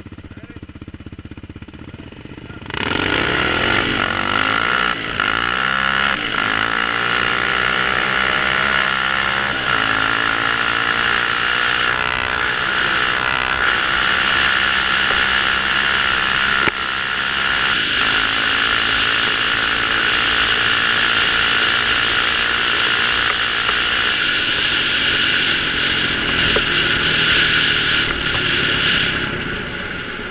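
Quad (ATV) engine idling at the start line, then launching hard about three seconds in and revving up through the gears, the pitch climbing and dropping back at each shift. It then holds a steady high-speed run with rushing noise, and the throttle eases off near the end.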